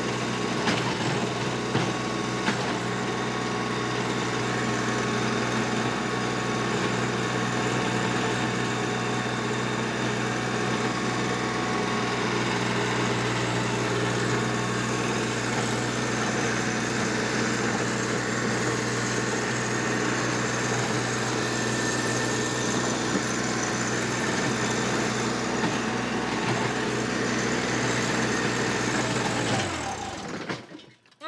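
TYM T264 compact tractor's diesel engine running steadily under load, driving a 5-foot PTO rotary tiller through wet, root-filled soil. It is a heavy load for a 24.8 horsepower tractor with about 20 horsepower at the PTO.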